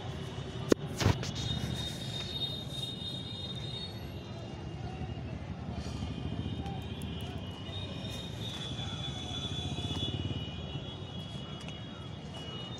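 Steady low rumble of a vehicle travelling on a road, with two sharp knocks close together about a second in.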